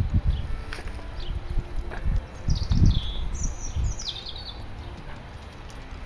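Wind buffeting the microphone in uneven low rumbles, with a small bird singing a quick run of high, falling chirps about halfway through.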